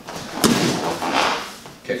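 A barefoot spinning back kick landing on a handheld kick shield: one sharp smack about half a second in.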